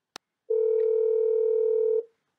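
A click on a telephone line, then a steady dial tone from about half a second in that cuts off abruptly. The call has been hung up and the line has dropped back to dial tone.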